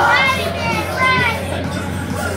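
High-pitched voices calling out with falling pitch, several in the first second or so, over crowd chatter and a steady low hum.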